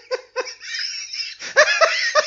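Laughter: a few short laughs, then a run of high-pitched giggling.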